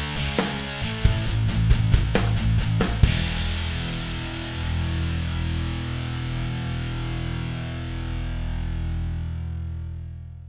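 Rock background music with distorted electric guitar: sharp hits and chords for about three seconds, then one held chord that rings on and starts fading near the end.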